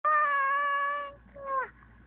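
A baby's high-pitched voice: one long note held steady for about a second, then a shorter note that slides down in pitch.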